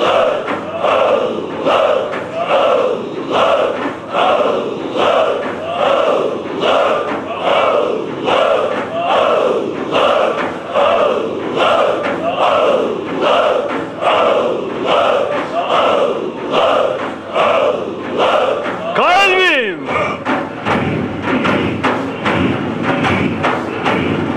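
A large group of men chanting dhikr in unison in a steady rhythm of about one phrase a second. About nineteen seconds in, a single voice gives a long cry that falls steeply in pitch. After it the chanting turns denser and harsher, with thuds.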